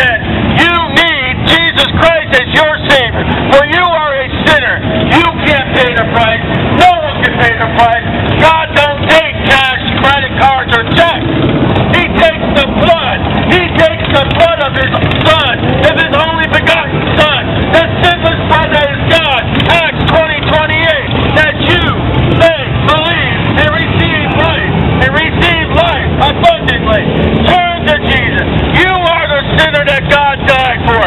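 Motorcycles and cars passing along a street with their engines running, under a loud, continuous voice.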